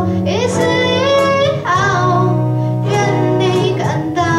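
Female vocalist singing a slow pop song through a microphone, over steady chords from acoustic guitars.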